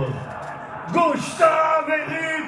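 A man shouting in celebration of a goal, radio-commentator style. A long held shout, falling in pitch, ends right at the start. After a short lull he breaks into drawn-out, sung-out vocalising about a second in.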